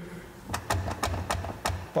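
Steering wheel being jerked against the engaged steering column lock, making a quick run of about seven sharp knocks. The wheel won't turn because the lock is still on after hotwiring without the key.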